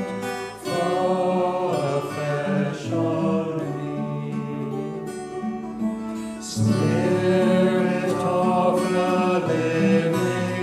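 A hymn sung with acoustic guitar accompaniment, slow sustained notes, growing louder a little past the middle.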